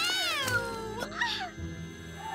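A high yowling cry, cat-like, that slides up and then falls away over about a second, followed by a shorter second cry, over background music.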